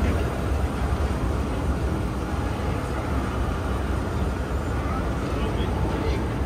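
Escalator running with a steady low rumble, with people talking nearby.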